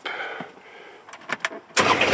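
A few light clicks, then near the end the Kubota RTV900's three-cylinder diesel engine starts up suddenly and settles straight into a steady run.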